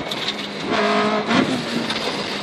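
Rally Toyota Corolla engine heard from inside the cabin, shifting down through the gears under braking. The engine note jumps up for about half a second near the middle as the car goes from fourth into third.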